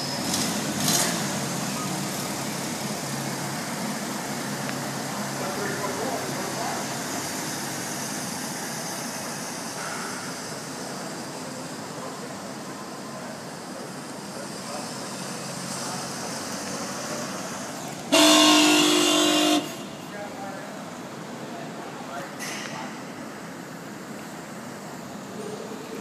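A car horn wired to the brake lights blares once for about a second and a half, roughly two-thirds of the way in: the horn sounds because the brake pedal has been pressed. The rest is steady background noise.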